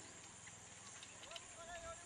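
Faint outdoor ambience: a steady high hiss, with faint distant voices. In the second half comes a run of short, high-pitched calls.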